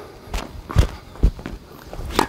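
Footsteps on a hard tennis court: three short thuds about half a second apart as a player moves to the ball.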